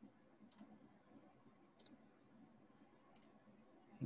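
Three faint computer mouse clicks, evenly spaced about a second and a third apart, over near-silent room tone.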